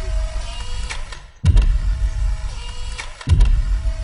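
Deep boom hits from a horror film trailer's soundtrack, two of them about two seconds apart, each followed by a low rumble. A faint steady tone hangs between the hits.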